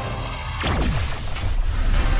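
Animated alien-transformation sound effect: a sudden whoosh a little over half a second in that sweeps down in pitch over about half a second. It plays over the dramatic background score.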